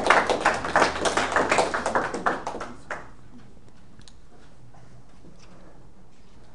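Audience applauding, a dense patter of hand claps that dies away about three seconds in.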